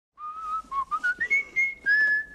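A person whistling a tune: a run of short, clear notes that step upward in pitch, ending on a longer held note.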